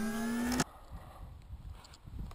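The tail of an intro logo sound effect, a held tone with overtones gliding slightly upward, cuts off abruptly about half a second in. After it there is only faint background noise with a few light ticks.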